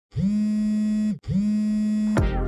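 Electronic intro sting: two held synthesized notes at the same pitch, each sliding quickly up to it at its start and lasting about a second, with a brief break between them.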